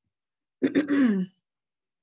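A woman clears her throat once, briefly, about half a second in: a short rough catch that ends on a falling voiced tone.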